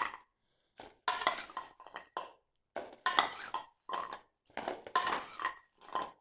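Wrapped sweets clattering against bowls in about six short bursts, as handfuls are scooped from one bowl and tossed up into another.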